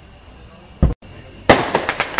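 Aerial firework shells bursting: a low boom just before a second in, then a louder, sharper bang about a second and a half in, followed by a quick run of crackles.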